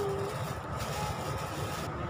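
Steady outdoor background noise: a low rumble like distant traffic or wind on the microphone, with a soft hiss about a second in.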